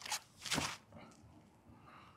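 Scuffs and rustles of a disc golfer's feet and body on a dry dirt tee pad as he steps into and releases a throw. There is a short scuff at the start and a longer, louder one about half a second in, then only faint scraping.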